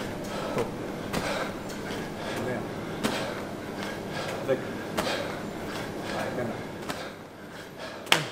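14-lb medicine ball (wall ball) repeatedly striking the wall target during wall-ball shots, one sharp thud about every two seconds, three in all.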